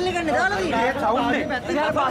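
A man speaking rapidly in Sinhala, with other voices chattering around him.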